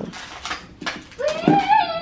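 A few light clicks and knocks of drawer-unit panels and hardware being handled, then, from just past halfway, a young child's high, wavering vocalizing that rises in pitch.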